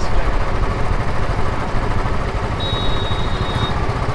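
Road noise of riding in close traffic among auto-rickshaws: a dense, rapidly fluttering engine rumble with wind on the microphone. A thin, high steady tone sounds for about a second past the middle.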